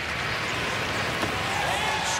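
Ballpark crowd noise, a steady hum of many voices, with a single faint pop a little over a second in as the pitch smacks into the catcher's mitt for a strikeout.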